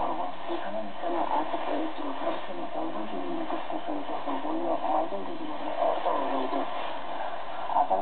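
Shortwave AM broadcast received on an ICOM IC-R8500 communications receiver: continuous Kyrgyz-language speech from PBS Xinjiang on 9705 kHz. The voice is narrow and thin, over a steady background hiss.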